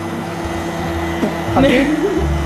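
Electric stand mixer running steadily, its motor beating cake batter of butter, sugar and eggs.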